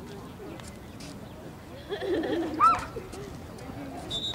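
Distant voices calling out across a soccer field. About two and a half seconds in comes one short shout that rises and falls in pitch, the loudest sound.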